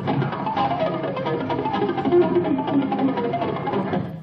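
Electric guitar played through a 5150 amplifier: a quick, continuous run of harmonics pinging out, one ringing note after another.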